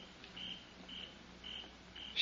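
Faint cricket chirps, short and high-pitched, about two a second, laid into the radio drama's outdoor scene as a sound effect.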